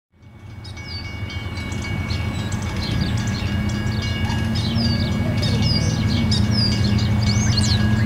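A pair of GE ES44AC diesel locomotives running in the distance as they approach, a steady low rumble that rises in level over the first few seconds. Songbirds chirp repeatedly over it.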